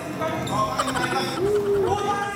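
Several voices calling and shouting over one another, with one drawn-out call in the last half second.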